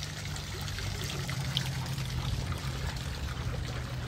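Water from an outdoor fountain splashing and trickling into its basin, with a steady low hum underneath.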